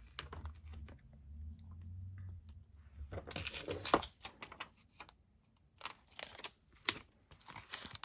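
Hands handling a rubber cling stamp and a clear plastic sheet: a low rubbing at first, then bursts of crinkling, peeling and light plastic clicks around three and seven seconds in.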